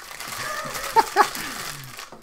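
Two men laughing: breathy laughter throughout, with two sharp, loud bursts of laughter about a second in.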